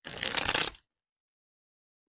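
A deck of cards being shuffled: a short rattle of rapid card flicks lasting under a second, right at the start.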